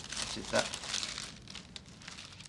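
Paper posters rustling and crinkling as they are handled and laid out, with irregular crackles of paper throughout.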